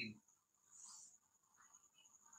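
Faint scratch of chalk on a blackboard, briefly about a second in, as an angle is marked on a diagram; otherwise near silence with a thin, steady high-pitched whine.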